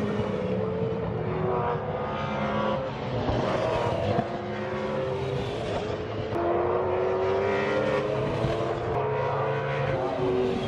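Racing car engines accelerating along the straight, their pitch climbing steadily and dropping back at each upshift, twice.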